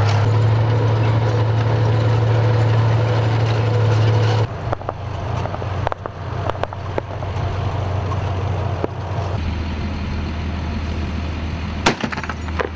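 Heavy military vehicles' engines running with a steady low drone. About four and a half seconds in the sound changes abruptly to a thinner mix with a few sharp clicks. Near the tenth second a different low engine drone takes over.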